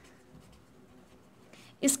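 Faint scratching of a pen writing on notebook paper, then a woman's voice starting to speak near the end.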